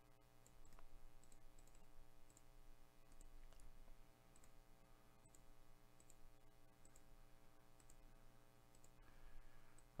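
Faint computer mouse clicks, repeated at irregular intervals, as a button is clicked over and over.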